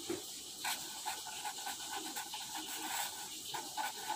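Pen writing a word on paper over a clipboard: a faint run of short scratchy strokes.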